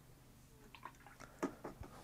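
A quick run of faint clicks and taps with a light watery sound, loudest about one and a half seconds in: a watercolour brush being rinsed in a water pot and knocked against its side.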